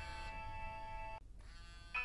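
Mobile phone ringing with a synthesized melody ringtone: long held electronic notes that drop away briefly just past the middle and come back near the end.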